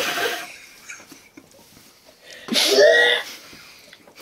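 A person's explosive vocal noises while eating: a breathy burst at the start, then about two and a half seconds in a short, loud voiced outburst with a harsh, breathy edge.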